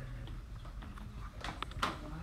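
A few quick light taps of a stylus on a tablet screen about a second and a half in, over a low steady room hum.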